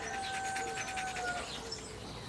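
A rooster crowing: one long, steady held note for about a second and a half, with a fainter note near the end.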